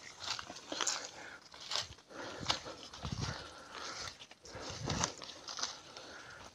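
Footsteps and rustling through dry leaves and brush in woodland undergrowth: irregular crunches roughly once a second.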